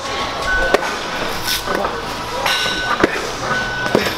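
Padded striking sticks hitting boxing gloves in a blocking drill: about four sharp smacks at uneven intervals over gym background noise.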